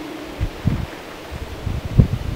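A spatula scraping the last herb-and-glycerin mash out of a plastic blender jar into a glass mason jar, with soft rustling and scraping over low, uneven wind rumble on the microphone. A sharper knock comes right at the end.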